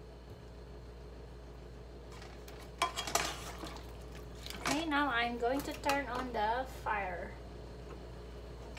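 Wooden spatulas knocking and scraping against a frying pan as pieces of marinated chicken are stirred, with a quick cluster of clicks about three seconds in.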